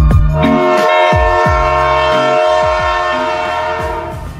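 A train horn sounding one long, steady blast from about half a second in, tailing off near the end, laid over hip hop music with deep sliding bass notes.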